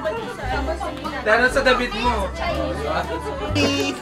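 Several people talking over each other, with background music and its steady bass notes underneath.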